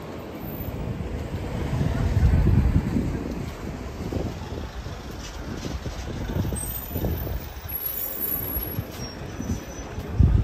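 Outdoor city street ambience: a low rumble that swells to its loudest about two to three seconds in, then settles back to a steady background.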